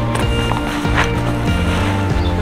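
Background music track with sustained bass notes and a steady beat.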